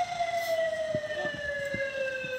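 A siren-like tone with overtones, falling slowly and steadily in pitch.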